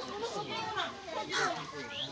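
Several people talking at once, their voices overlapping into group chatter with no single clear speaker.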